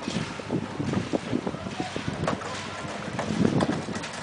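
A wheelbarrow rattling and crunching over a gravel path, with footsteps on the gravel: an irregular run of knocks and crunches, loudest a little after three seconds in. Wind buffets the microphone.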